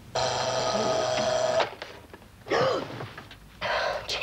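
An alarm clock bell rings for about a second and a half, then cuts off abruptly as if switched off. A short sound with a falling pitch and a brief breathy burst follow.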